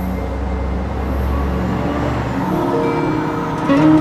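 Background music of short notes stepping in pitch, over a steady low rushing noise.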